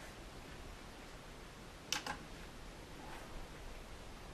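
Faint steady hiss of room tone with one short click about two seconds in.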